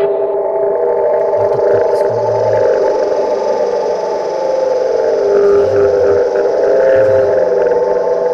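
Trailer score: a loud, sustained droning chord of several steady tones, with a few short deep pulses underneath.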